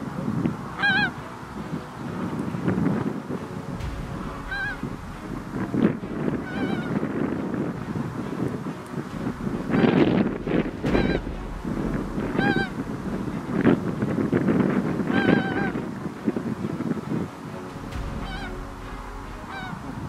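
Pink-footed geese calling as they fly in to decoys: short, high-pitched, slightly wavering calls repeated every second or two, over a low rumble of background noise.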